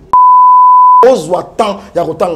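A single steady electronic bleep tone at one pitch, lasting about a second, edited in with all other sound cut out beneath it. A man's speech resumes straight after it.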